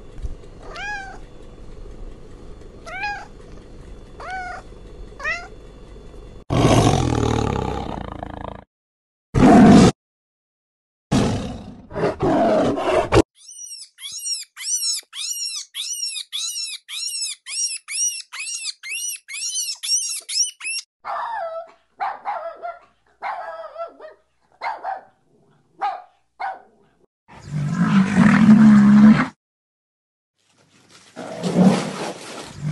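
A string of different animals' calls cut one after another. First come a few short falling cries about a second apart, then several loud cries with gaps between them. Next is a rapid run of high calls, about three a second, lasting several seconds, then shorter scattered calls and a loud low call near the end.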